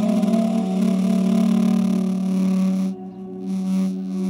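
Duduk music holding one long, low note, with a dip in loudness about three seconds in.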